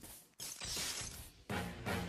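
Faint clattering video-game sound effects, then music with low struck notes starting about one and a half seconds in.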